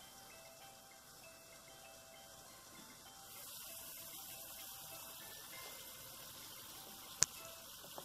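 Sauce simmering in a wok, a faint hiss that grows louder about three seconds in as the glass lid comes off, over soft background music with light chime-like notes. A single sharp click near the end.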